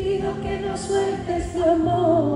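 Live pop band playing, with a female voice holding sung notes between lyric lines.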